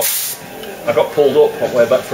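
A short burst of compressed-air hiss from a pneumatic die grinder, lasting about a third of a second, followed by a person's voice.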